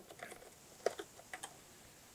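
Faint plastic clicks and ticks as the brush-roller frame on the underside of an iRobot Roomba j7+ robot vacuum is unlatched and its green rubber rollers are worked loose by hand: a handful of small ticks, the sharpest about a second in.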